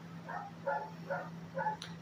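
A dog barking faintly in the background: four short barks, each about half a second apart.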